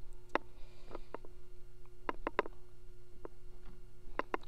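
Scattered light clicks and taps of small parts being handled as a new shaft seal is pushed snugly onto the pump motor's shaft, a few bunched together a little after halfway, over a faint steady hum.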